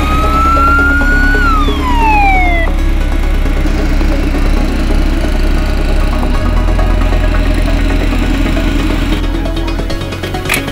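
Background electronic music with a steady bass line throughout. Over it an ambulance siren sounds one long wail, rising slowly and then falling, and cuts off about three seconds in.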